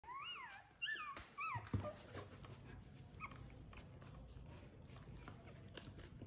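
Newborn golden retriever puppies squealing at their mother moving beside them: three high cries that rise and fall in pitch in the first couple of seconds. A soft thump follows, then quieter shuffling with one brief squeak about three seconds in.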